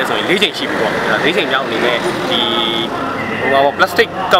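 A man talking, with no other sound standing out.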